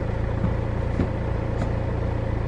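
A steady low engine hum, with a few faint clicks.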